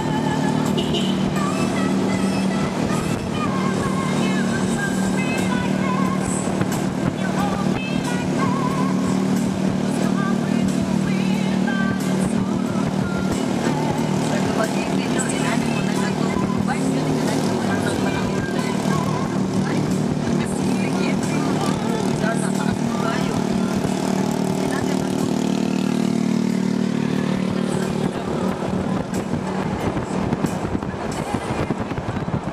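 Steady drone of a vehicle's engine, heard from on board while it drives along a road, mixed with music and a voice.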